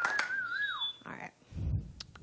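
Studio audience applause dying away, with one person whistling a long wavering note that drops off about a second in. A soft low thump follows near the end.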